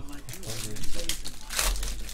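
Foil trading-card pack wrapper crinkling as it is handled and opened, a run of crackles with the loudest burst near the end.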